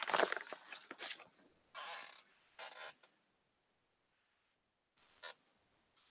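Faint rustling of clothing being handled: a cluster of rustles at the start, two short rustles around two and three seconds in, a pause, and one brief rustle near the end.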